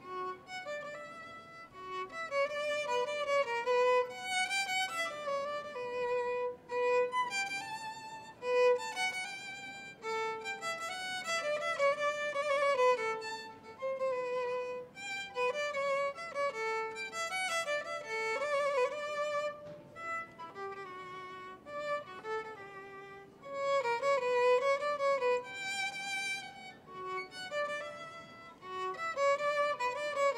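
Violin music: a single melody line of bowed notes, some held and some in quick runs.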